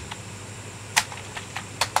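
A few sharp, isolated clicks of computer keys, one about a second in and a couple more near the end, with little else in between.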